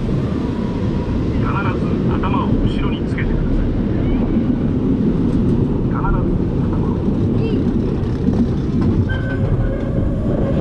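Roller coaster train running along its steel track, a steady loud rumble mixed with rushing air, with a few brief high wavering yells from riders about a second and a half in and again around six seconds.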